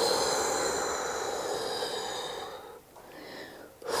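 A woman blowing long, breathy whooshes out through her mouth to imitate the wind. One long blow fades out after nearly three seconds, and a shorter, softer one follows near the end.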